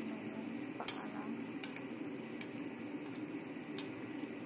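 A spoon stirring sheep legs in paksiw sauce in a stainless steel pot over the steady sizzle of the cooking sauce, with a sharp clink of the spoon against the pot about a second in and several lighter taps after.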